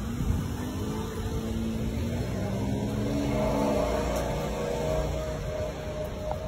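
Outdoor street sound with a steady low rumble and a motor vehicle's engine going by, its pitch rising over the first couple of seconds and then holding.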